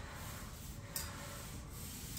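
Paint roller rolling across a ceiling: a steady rubbing hiss, with one sharp click about halfway through.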